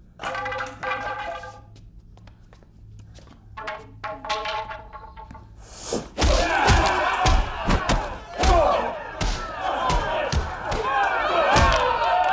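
Staged sparring fight with fighting sticks: two held, voice-like tones in the first half, then from about halfway repeated heavy thuds of blows under a crowd of onlookers cheering and shouting.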